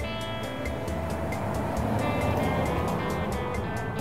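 Background music with a steady beat of ticks and sustained tones, with a broad rushing noise that swells up and fades away through the middle.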